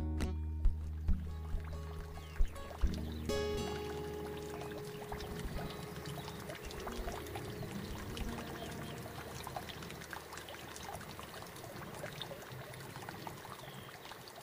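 A held guitar chord rings out and fades over the first four or five seconds. After that comes shallow, muddy water trickling and lapping, with many small splashes and patters.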